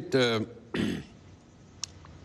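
A man's spoken word trails off, then a short throat clearing comes just under a second in.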